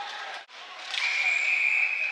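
Referee's whistle blown in one long, steady high note about a second in, over the noise of the arena crowd, stopping play for a hand pass.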